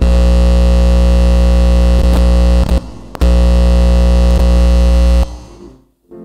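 Loud, steady electrical buzz through the church sound system, an accidental hum that was not planned. It drops out briefly a little before halfway, comes back, and cuts off about five seconds in.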